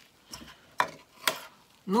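A few short, light clicks and taps from gloved hands handling small items on a plastic tray, with faint rustling between them.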